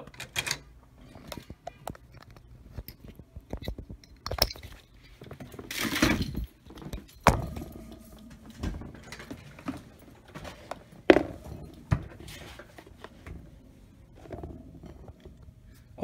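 Hands handling hard plastic printer parts: scattered clicks, knocks and light rattles as an inkjet print head is unlatched from its carriage and then handled in a plastic tub, with a brief rustle about six seconds in.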